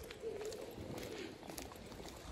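A bird calling faintly outdoors: one low call lasting about a second, just after the start.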